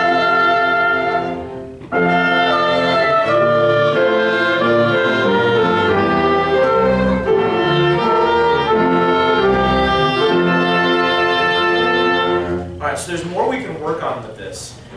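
A mixed ensemble of strings and wind instruments playing a part-written passage in held chords. The music fades out in the first two seconds, comes back in together at two seconds, and stops about a second and a half before the end, when talking starts.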